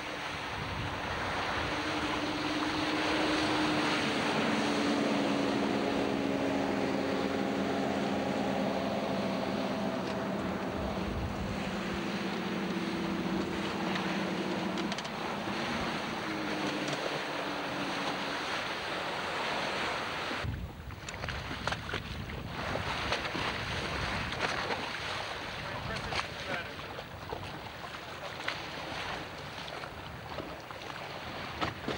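Twin Volvo Penta 4.3-litre V6 petrol sterndrive engines of a Princess 266 Riviera running at high speed, a steady multi-tone engine note over the rush of the hull through the water. About two-thirds of the way through the engine note drops away sharply, leaving wind buffeting the microphone and water noise.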